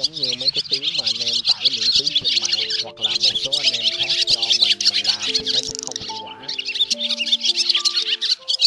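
Fast, dense twittering of a flock of barn swallows: a flock-calling lure recording used to attract swallows. Music is mixed in underneath, a wavering melody for the first two seconds and then held notes.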